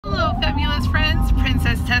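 A woman talking and greeting, over the steady low rumble inside a car's cabin.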